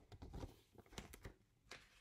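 Paperback picture book being handled and its pages turned: a run of soft paper rustles and taps, with one more near the end.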